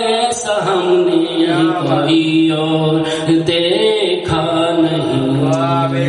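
A man's solo voice chanting a melodic Urdu mourning recitation through a microphone, unaccompanied. He holds long notes with wavering, ornamented turns and takes short breaks between phrases.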